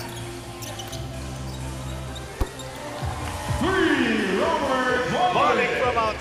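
Live arena sound of a professional basketball game: a steady low hum with one sharp knock about two and a half seconds in. From about halfway, a louder wavering, sliding pitched sound rises over it.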